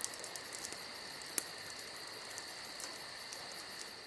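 Crickets chirping in a steady night-time insect chorus, a high held trill with rapid even pulsing. A single sharp click about a second and a half in.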